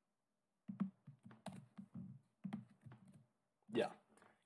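Typing on a computer keyboard: a quick run of keystrokes starting just under a second in and stopping about a second before the end. A brief voice sound comes near the end.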